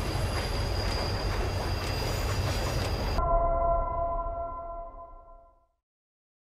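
Film trailer sound effects: a loud rumbling, grinding noise with a steady high whine, which cuts off abruptly about three seconds in. A ringing chord of a few tones is left behind and fades out before the end.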